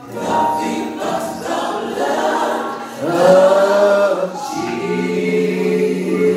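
Group of voices singing a gospel song together, holding long notes.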